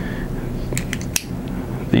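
A few light metallic clicks about a second in as an oval carabiner and hitch climber pulley hardware are handled and the carabiner is clipped onto the pulley.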